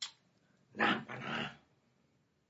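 A short, rough, breathy grunt from a man, about a second long, with a faint click just before it.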